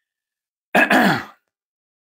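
A man clears his throat once, briefly, a little under a second in.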